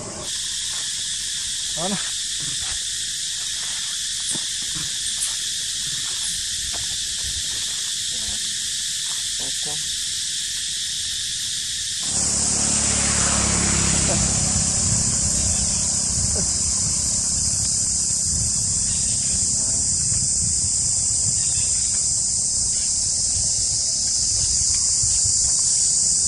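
Steady, high-pitched outdoor insect chorus, with scattered short clicks and brief calls in the first half. About halfway through the sound jumps to a louder, higher insect drone with a low rumble beneath it.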